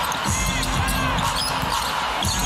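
A basketball being dribbled on a hardwood court, bouncing repeatedly, over the steady background noise of an arena.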